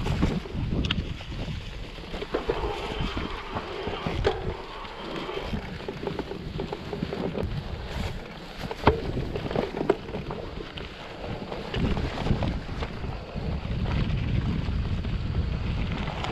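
Mountain bike riding down a rocky dirt singletrack: tyres rolling over dirt and stones with a steady low rumble of wind on the microphone, broken by scattered sharp knocks and rattles from the bike hitting rocks.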